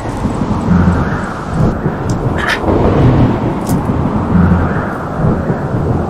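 Rolling thunder rumble, a dramatic sound effect, swelling and easing every second or so, with a couple of sharp crackles about two and a half seconds in.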